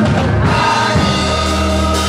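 Gospel choir singing in long held notes over a sustained low accompaniment.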